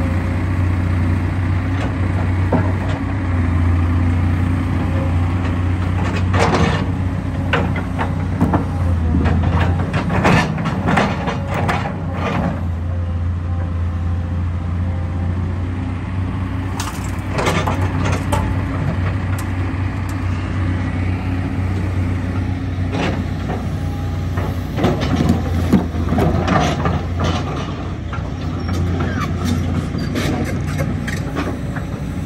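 Volvo tracked excavator's diesel engine running steadily with the hydraulics working. Several bursts of clattering knocks as bucket loads of dirt and debris drop into a metal dump trailer.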